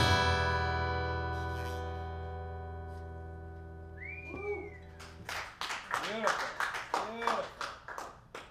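The last strummed chord of an acoustic guitar ringing out and fading over about five seconds. Near the end of the fade comes a short whistle, followed by a few seconds of scattered clapping with voices cheering.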